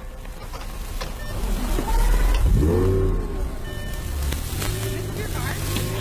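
Lamborghini Gallardo V10 engine revving up loudly as the car pulls up, then settling to a steady idle.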